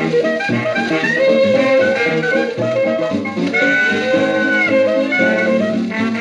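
A 1944 78 rpm record playing early jazz: a small band with brass in the lead, all playing together, with a held note about midway.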